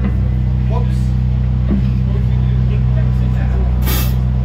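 Steady low electric hum from the band's amplifiers as the music stops, with faint voices in the room. A brief sharp hiss sounds just before the end.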